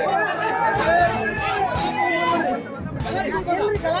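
Several men talking over one another in a heated argument, their voices overlapping in a crowd.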